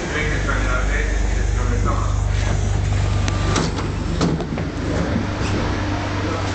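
Euskotren 300-series electric train standing with a steady low hum that starts suddenly, with a few sharp clicks and knocks in the middle seconds.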